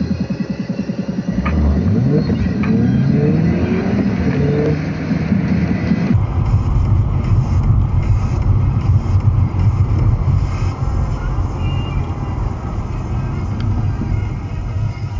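Car engine, heard from inside the cabin, pulling away from a standstill, its pitch rising in several successive climbs as it goes up through the gears. About six seconds in it changes abruptly to a steady low drone of engine and road noise at cruising speed.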